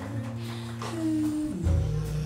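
Live jazz trio playing: grand piano over sustained electric bass notes with light drums, the bass sliding down to a new note about one and a half seconds in.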